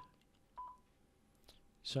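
Icom IC-7300 transceiver's key beep: a short high beep about half a second in as a front-panel key is pressed to exit the menu, with a faint click later.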